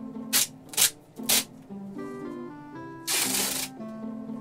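Adhesive tape being pulled off its roll in three quick rips in the first second and a half, then one longer rip of about half a second near the end, over background music.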